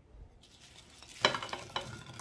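Faint handling noise, then a short run of light clicks and rattles about a second in as crispy hash rounds are tipped from a dish onto a ceramic plate.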